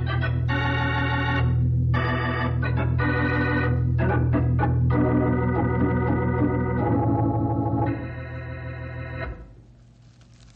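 Organ music bridge between scenes: a run of sustained chords that change every second or so, with a few short notes in the middle, ending about nine seconds in.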